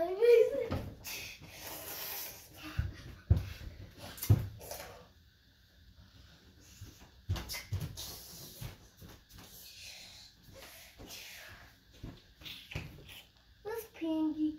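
A child's voice briefly at the start, then breathy rustling and several soft knocks as a child handles stuffed toys and moves about behind a wooden TV stand.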